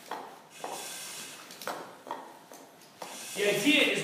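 Firefighter breathing through an SCBA facepiece regulator, a few hissing breaths in the first two seconds, while turnout gear and the air pack shuffle on a rubber mat. A man starts speaking about three seconds in.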